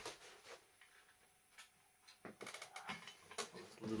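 Quiet room with a few faint knocks and clicks of objects being handled, one about halfway through and a short run of clatter in the second half.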